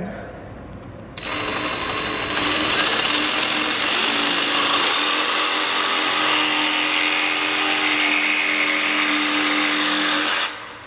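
Cordless DeWalt jigsaw starting about a second in and running steadily as it cuts through a small piece of wood.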